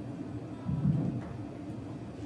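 A single dull, low thump about three-quarters of a second in, over a steady low rumble of background hum.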